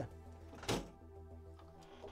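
Quiet background music with a single short thump about two-thirds of a second in, as a guitar is reached for and handled.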